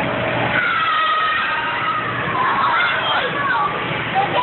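Overlapping high voices calling out in long, rising and falling tones over a steady rushing background noise.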